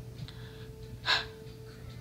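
One short, loud, breathy gasp from a girl about a second in, over a steady low hum.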